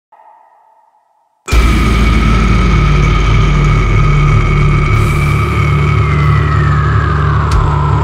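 Cinematic intro drone: after a faint tone and a short silence, a sudden loud onset about one and a half seconds in gives way to a sustained low rumble under two steady ringing tones, which bend downward near the end.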